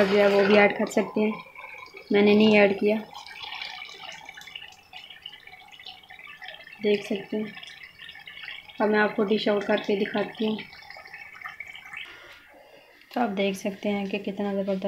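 A woman's voice speaking in short bursts. Between her phrases, a spoon stirs thick bread halwa in ghee in a steel pot, much quieter than the voice.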